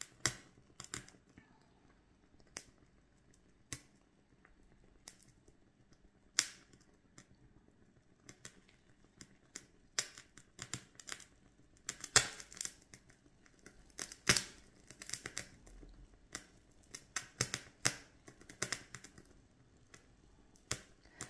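Thin wax candle burning tilted over a bowl of water, with molten wax dripping into the water: irregular small crackles and pops, a few with a short hiss, sparse at first and more frequent in the second half.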